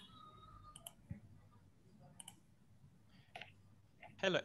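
Near silence broken by a few faint, short clicks, spread a second or so apart.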